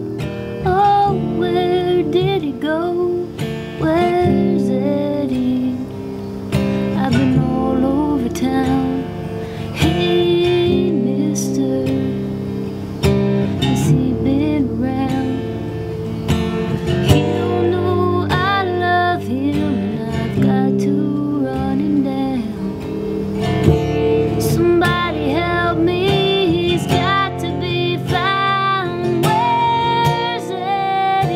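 Acoustic guitar strummed steadily, with a woman singing over it in long, bending sung lines.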